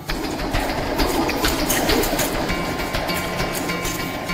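Dense, rapid clatter of many bamboo bows being shot and arrows flying at once. Music is faintly underneath from about halfway.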